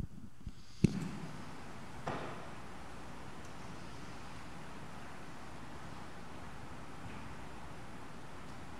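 A handheld microphone is set down on the pipe organ's wooden console: one sharp knock about a second in, a softer bump about a second later, then a steady faint hiss.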